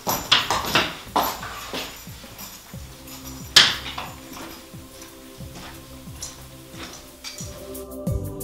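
Quiet background music under a string of clinks and knocks from drinking glasses set down on a wooden table, the sharpest clink about three and a half seconds in.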